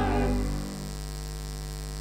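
A group's last sung note fades out within the first half second, leaving a steady electrical hum from the church sound system.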